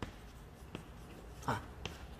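Chalk writing on a blackboard: faint scratching broken by a few brief taps of the chalk against the board.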